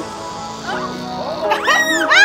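Upbeat background music, with a woman's high-pitched squeals breaking in about a second and a half in, sliding up and down in pitch.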